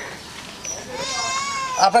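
A goat bleating once, a single high call lasting just under a second about halfway through.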